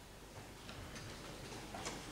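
Quiet room tone of a large chamber with a few faint clicks or ticks, the clearest near the end.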